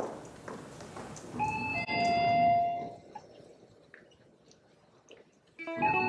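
A few held, chime-like notes sound together about a second and a half in and fade after about a second and a half. A quiet stretch follows, and keyboard music starts just before the end.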